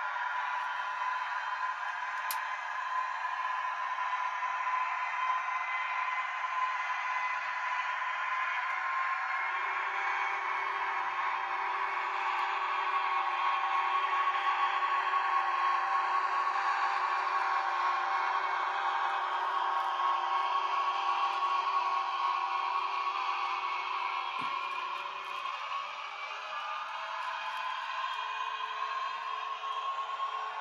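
N-gauge model train running on the layout's track: a steady whine from the locomotive's motor over a hiss of wheel and rail noise, with a lower hum that shifts in pitch a few times.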